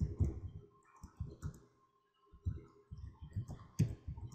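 Typing on a computer keyboard: short runs of keystroke clicks with brief pauses between them, the longest pause about halfway through.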